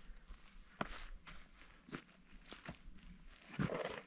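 Boots scuffing and stepping on a bare rock slab, with a few sharp clicks of gear being handled. A louder rustle comes near the end.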